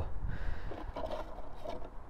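A plastic chain scabbard being slid off the bar of a Husqvarna T536 LiXP battery chainsaw, with faint scraping and a few light clicks of handling. The saw is not running, and a low outdoor background lies under it.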